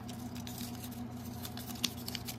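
Light, scattered clicks and rustles of hands handling small toy packaging and wrappers, with one sharper click near the end, over a faint steady hum.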